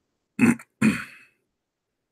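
A man clearing his throat: two short harsh bursts in quick succession, about half a second in.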